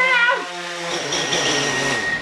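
DJI Phantom 4 quadcopter's motors and propellers whirring as it hovers low and sets down. The whine wavers in pitch for the first half-second, then settles into a steadier whir.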